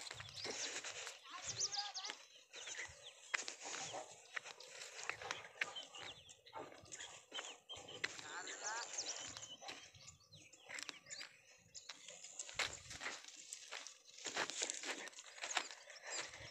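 Faint outdoor farm sounds: many short, scattered animal calls with distant voices underneath.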